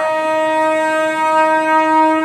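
Train horn sounding one long, steady note.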